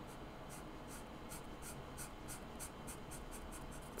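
Felt-tip art marker rubbing on sketchbook paper in faint, quick short strokes, about four a second, as a small area of a drawing is coloured in.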